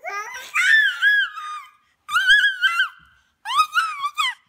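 Baby squealing and laughing in three high-pitched bursts, the first the longest.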